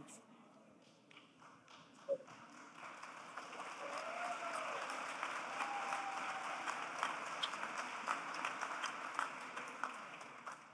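An audience applauding. It starts quietly about three seconds in, builds to a steady level and fades near the end.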